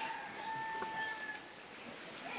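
A rooster crowing: one long, steady held note lasting a little over a second, then fading out.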